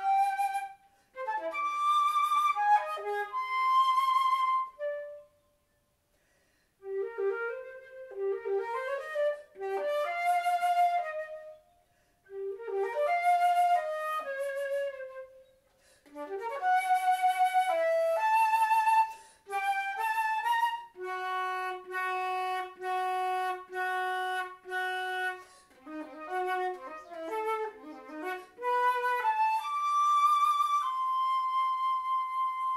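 Solo concert flute playing a contemporary piece in short melodic phrases with pauses between them, wrapped in a subtle halo of digital reverb. About twenty seconds in it repeats one note in evenly spaced pulses, then returns to moving lines.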